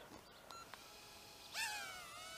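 Cheerson CX-10D nano quadcopter's tiny motors spinning up for take-off about one and a half seconds in: a high whine that rises sharply, dips slightly, then holds a steady pitch as it lifts off.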